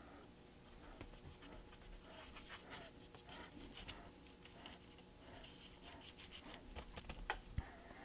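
Faint, soft scratching of a paintbrush stroking a thin coat of paint onto a flat model wall piece, in a run of short, uneven strokes.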